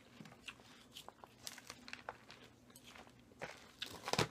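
Forks tossing a Caesar salad of romaine lettuce and croutons in a large glass bowl: faint scattered clicks and light crunching rustles, a little busier near the end.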